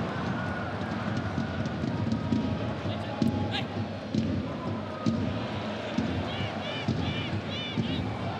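Football stadium crowd noise, a steady murmur with faint chanting and shouts, broken by a few sharp thuds of the ball being kicked in open play.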